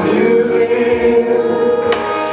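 Gospel worship singing through microphones and a PA: several voices hold one long note of a slow song, with a brief sharp sound near the end.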